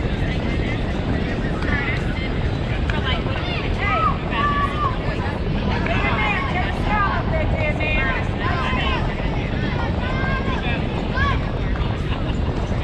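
Young children's voices calling out at intervals, high-pitched and scattered, over a steady low rumble.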